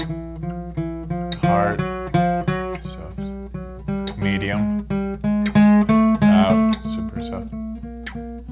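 Acoustic guitar playing a chromatic finger exercise as a steady run of single picked notes, louder in the middle and softer toward the end, as a dynamics drill.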